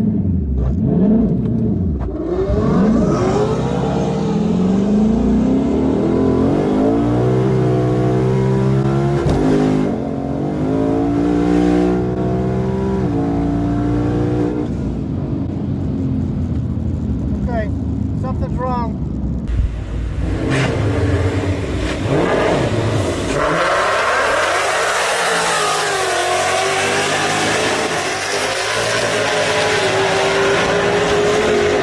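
Inside the cabin of a twin-turbo 5.0 Coyote V8 Mustang GT on a drag pass: the engine revs up and down in steps as it pulls through the gears. About two-thirds of the way in, the sound changes to the car heard from trackside running down the strip. The driver says the ten-speed automatic transmission gave a loud bang and would not let the car launch, a sign the transmission is failing.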